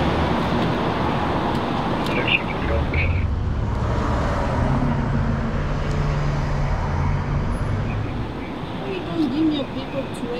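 Road traffic with a vehicle engine's low hum, strongest from about three to eight seconds in, then easing off.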